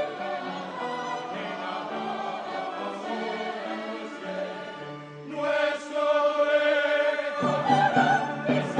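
Mixed choir singing with a small orchestra of strings, piano and brass in a classical oratorio passage. The music swells louder about five seconds in and grows fuller again near the end.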